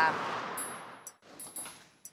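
Street traffic noise fading away, followed by a few light footsteps on a hardwood floor, sharp knocks about a third to half a second apart.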